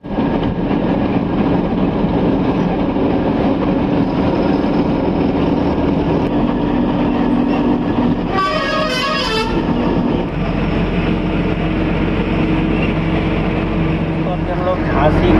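Steady engine and road hum inside a moving truck's cab. About eight seconds in, a horn sounds once for about a second with a wavering tone.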